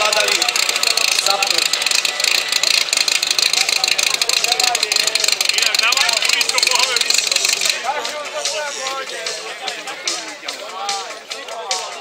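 Portable fire pump engine running hard with a loud steady hiss, shut off suddenly about three-quarters of the way through as the attack run ends; voices continue behind it.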